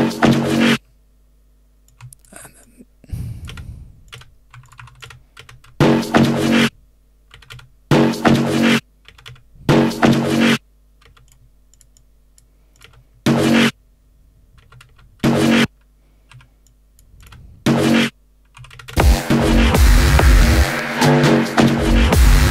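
A short pitched snippet of an electronic techno track played back in a DAW and stopped after less than a second, about seven times, with computer keyboard and mouse clicks in the quiet gaps between. About 19 seconds in, the full techno mix with a heavy kick plays continuously.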